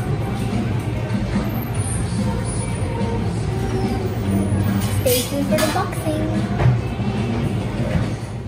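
Café room sound: background music and voices of other people over a steady low rumble, with a couple of short hisses a little past halfway.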